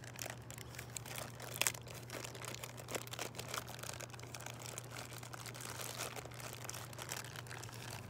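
A small clear plastic bag crinkling as fingers pick at it, giving irregular light crackles and clicks throughout, over a faint steady low hum.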